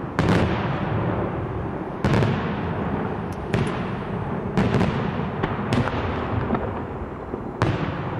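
Daylight aerial firework shells bursting overhead: loud, sharp bangs at irregular spacing, about ten in eight seconds, the loudest about two seconds in, with a rolling low rumble of echoes between them.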